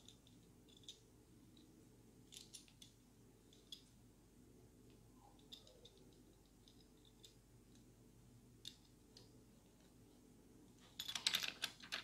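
Mostly near silence, broken by faint, scattered small clicks as a stainless steel bolt snap and a backup dive light are handled while nylon line is threaded through their eyes, and a quicker run of clicks near the end.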